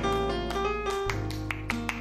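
Jazz played on a Steinway grand piano: a quick run of separate notes with crisp attacks over a sustained low bass note.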